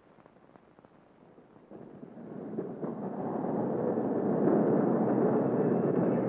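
Steam locomotive running noise, a rough rushing rumble that fades in about two seconds in and swells to full loudness as the engine draws near.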